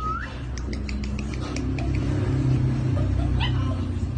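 A dog's vocal sounds: a short rising whine at the very start, then a low, steady sound that swells in the middle.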